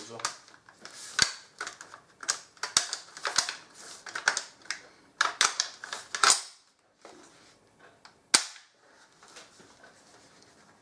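M1 Garand's action being worked by hand: a run of sharp metallic clacks and clicks as the operating rod and bolt are cycled, then a pause and one loud single click a little past eight seconds, as a function check of the freshly reassembled rifle.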